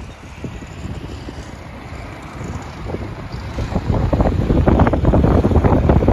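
Wind buffeting the microphone of a camera on a moving motorcycle: a low, gusty rumble that grows much louder about four seconds in.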